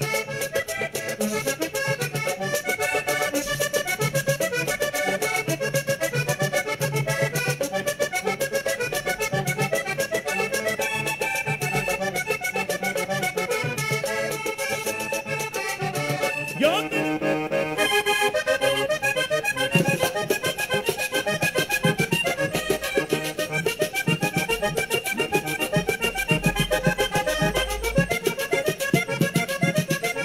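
Vallenato paseo played on a diatonic button accordion, without singing, over the rhythm of caja drum and guacharaca scraper. A little over halfway through the playing changes abruptly as a different accordionist's rendition is spliced in.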